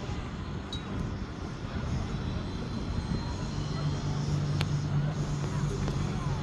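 A steady low mechanical rumble and hum that grows stronger about halfway in, with voices of onlookers under it.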